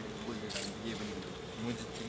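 A steady insect buzz under faint, low voices, with a brief hiss about half a second in.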